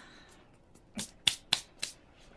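Hands handling small nail-art items on the table: about five short, sharp clicks and rustles, starting about halfway through after a near-silent first half.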